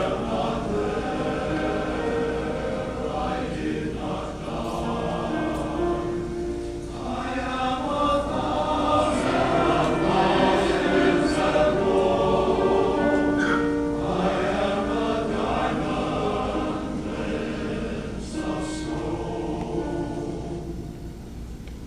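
Men's chorus singing in harmony with long held notes, breaking briefly between phrases and growing louder in the middle.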